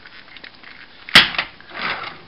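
A single sharp plastic click about a second in, as a plastic Transformers Hummer toy is turned and set on a tabletop, followed by softer handling noise.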